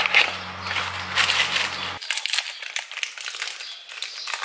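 Kinder Happy Hippo packaging rustling and crinkling as the biscuits are taken out and set down, with small clicks and taps. A low steady hum cuts off suddenly about halfway through.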